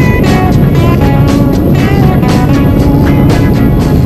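Background music with a steady beat and a pitched melody line.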